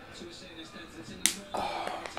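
A man chugging a can of beer: faint sounds, then one sharp smack about a second in as the can comes off his lips at the end of the chug, followed by a breathy gasp of 'oh'.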